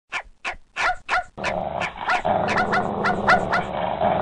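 A dog barking in quick, high-pitched yaps, about three a second, each falling in pitch. A steady background sound joins underneath about a second and a half in.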